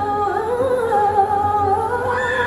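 A woman singing live into a microphone over an arena PA, holding long notes that waver and bend in pitch.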